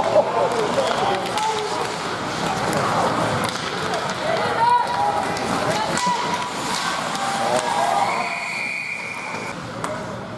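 Ice hockey rink with voices from the stands and players calling out, and sharp clacks of sticks and puck. About eight seconds in, a referee's whistle is blown once and held for about a second and a half, stopping play.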